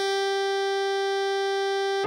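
A synthesized alto saxophone tone holding one melody note, written E5, steady and without vibrato, over a fading low accompaniment note. Right at the end it moves down a step to the next note.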